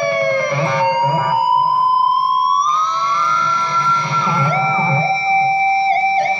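Ibanez JEM electric guitar playing a lead line: long sustained notes that glide slowly up and down in pitch, settling into a held lower note near the end.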